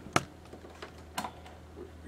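A few sharp clicks at a computer keyboard, the loudest just after the start and another a second later, over a faint low hum.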